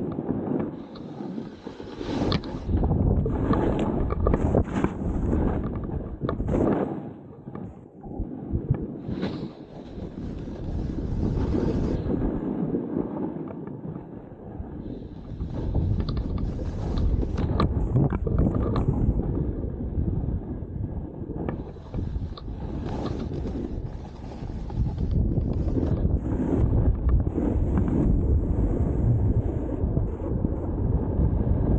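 Wind buffeting the microphone of a 360 camera, mixed with a snowboard hissing and scraping over snow as the rider descends. The noise rises and falls unevenly with the turns and is loudest over the last few seconds.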